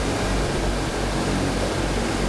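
Steady hiss with a low rumble: constant background noise of the hall and recording, with no distinct event.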